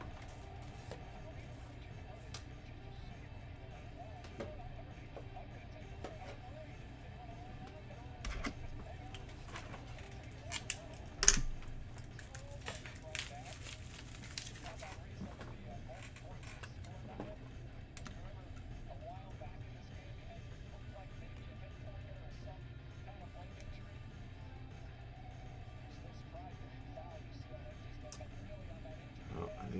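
Faint background music over a steady low hum, broken by scattered clicks and knocks of objects being handled on a tabletop. The sharpest click comes about 11 seconds in.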